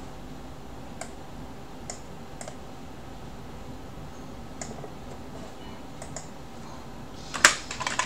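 Computer keyboard typing: a few scattered key clicks, then a quick, louder run of keystrokes near the end, over a steady low background hum.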